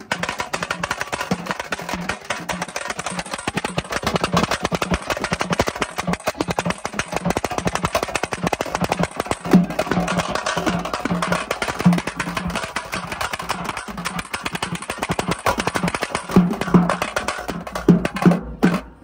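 Teenmaar drum band playing a fast, dense stick rhythm on side drums, under a steady pulsing lower beat, with a few heavier strokes standing out now and then.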